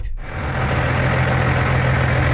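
Semi-truck diesel engines idling, a steady low hum with an even rush of engine noise.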